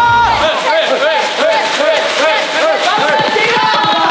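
Several young men yelling and whooping in excitement over one another, with wrapping paper rustling and tearing.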